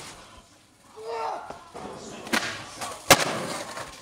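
A brief vocal exclamation about a second in, then two sharp knocks of a skateboard hitting concrete, the second the louder.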